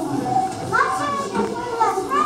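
Children's voices speaking: a child delivering spoken lines, with the high pitch of a young child's voice, in a reverberant hall.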